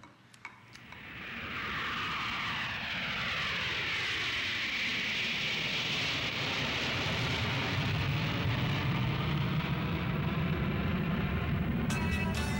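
A steady rushing noise that swells in over the first two seconds, with a slow falling sweep running through it like an aircraft passing over; a low rumble builds under it in the second half.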